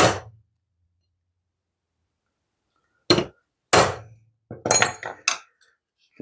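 A big ball-peen hammer strikes a small ball-peen hammer whose peen sits on the pivot pin of old steel pliers on an anvil: one sharp metal-on-metal blow with a short ring, peening the pin to tighten the loose jaws. Then, from about three seconds in, about five metallic clanks and clinks, some ringing brightly, as the hammers and pliers are moved on the anvil.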